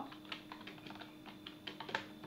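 Computer keyboard being typed on: a quick, irregular run of faint key clicks as a short line of text is entered.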